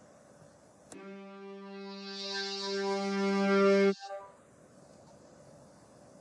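A single sustained violin note, low in pitch, played back from the sound-wave simulation: it starts about a second in, grows steadily louder over about three seconds and then cuts off suddenly.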